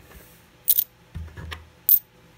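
Silver Mercury dimes clinking together as a hand gathers them up from a stack: two sharp metallic clinks about a second apart.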